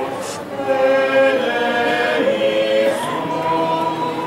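A choir singing a slow religious chant, several voices holding long notes together in harmony and moving to new notes every second or so.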